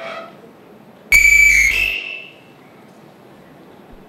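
A sudden loud electronic tone with several steady pitches, like a beep or buzzer, lasting about a second and then fading.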